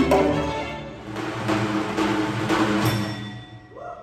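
String quartet playing sustained chords together with a hand drum striking about twice a second; the music fades away near the end.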